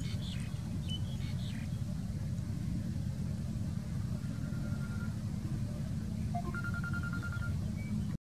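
A steady low rumble, with a few short high squeaks in the first two seconds and a thin held high tone twice in the second half.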